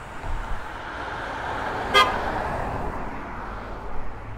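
A vehicle going past, its noise swelling and then fading, with one very short horn toot about halfway through.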